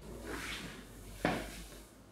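Soft rustling, then a single short knock about a second and a quarter in.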